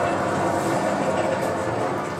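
A lifeboat running down its launch slipway: a steady rushing noise with no break, heard on a film soundtrack played through speakers in a room.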